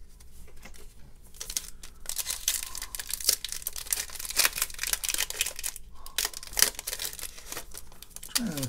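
A foil trading-card pack wrapper being crinkled and torn open by hand: a dense run of sharp crackles that starts about two seconds in, with the loudest snap about two-thirds of the way through.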